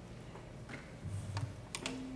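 Scattered light clicks and knocks as string players handle their instruments and settle in, then one held low string note starts near the end.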